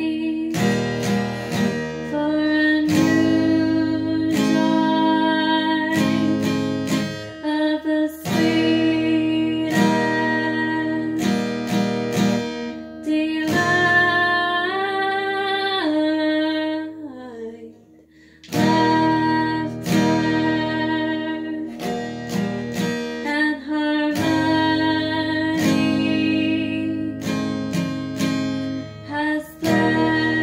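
Epiphone acoustic guitar strummed in repeated chords, with a woman singing along. The playing breaks off briefly about eighteen seconds in, then resumes.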